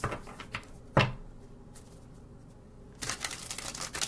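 A tarot deck being shuffled by hand on a table: a few card clicks, one sharp tap about a second in, then a quick run of rapid riffling clicks in the last second.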